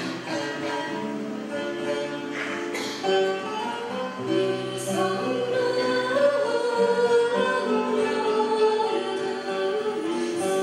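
Live music from a choir and string ensemble: sustained string notes under singing voices, growing a little louder in the second half.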